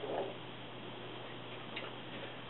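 Quiet room with a steady low hum, and a faint short sound just after the start.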